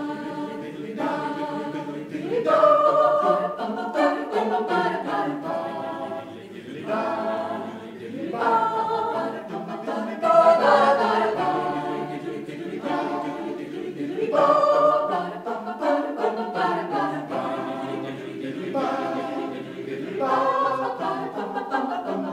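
Mixed chamber choir of women's and men's voices singing a cappella in harmony, in phrases that swell and fall every second or two.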